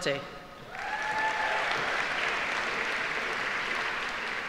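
Audience applauding, starting about a second in and going on steadily.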